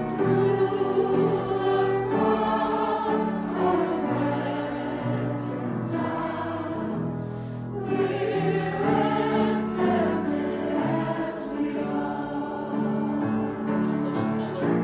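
A mixed choir of teenage girls and older adults singing a choral anthem in harmony, with sustained chords in phrases of about two seconds each.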